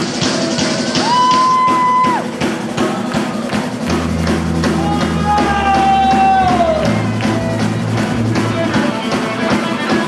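A ska band playing with drum kit, bass and guitar at a steady beat. A held melody note sounds about a second in, and another, coming in around the middle, slides down in pitch near the end, over the bass line.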